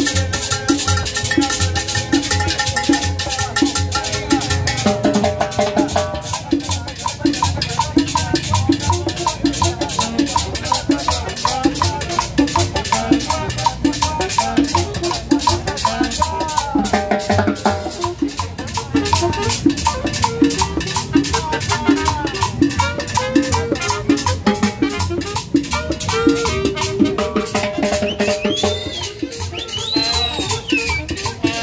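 Live Latin dance band playing with a steady, driving beat: saxophone melody over timbales, conga and upright bass.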